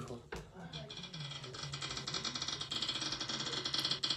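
Rapid ticking of a phone's spin-the-wheel app as the on-screen wheel spins, played through the phone's small speaker.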